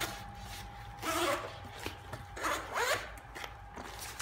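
Zipper on a Cordura binder case being unzipped in two pulls, one about a second in and another near three seconds.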